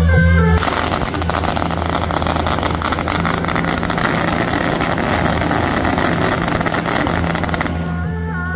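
A long string of firecrackers going off in a rapid, unbroken crackle of sharp bangs. It starts about half a second in and stops just before the end, with a low music drone under it.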